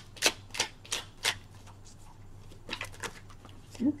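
Deck of oracle cards being shuffled by hand: a run of sharp card clicks about three a second, a short lull, then a few more clicks near the end.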